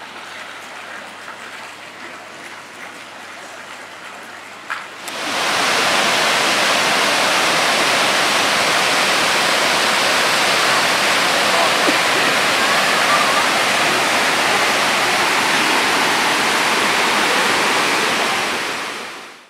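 A rainforest waterfall cascading over boulders: a loud, steady rush of falling water that starts abruptly about five seconds in, after a quieter stretch of faint background noise.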